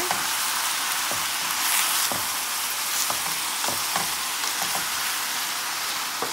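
Frozen diced squash sizzling in oil in a stainless steel pan, stirred with a wooden spoon that knocks and scrapes against the pan a few times.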